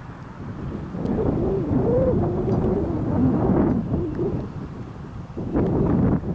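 Wind buffeting the microphone as a loud low rumble that swells about a second in and again near the end, with a drawn-out wavering voice over it for a few seconds.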